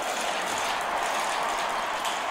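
Marbles rolling along a race track: a steady rolling noise.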